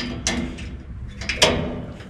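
Short steel chain on a nut harvester's belt tensioner clinking against the steel frame as it is pulled by hand to tighten the belt: a few sharp metallic clicks and clanks.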